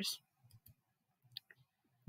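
A computer mouse button clicking once, sharply, about one and a half seconds in, with a couple of fainter ticks before it, against near silence: the click that selects a menu command.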